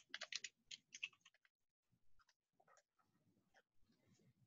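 Faint computer keyboard keystrokes: a quick run of key presses in the first second and a half, then a few scattered ones, as a username is typed.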